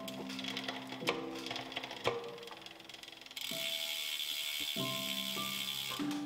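Background music with sustained notes, over the ratcheting of a road bike's rear freehub as the wheel and cassette spin freely. A denser, faster ratcheting buzz comes in about halfway and stops at the end.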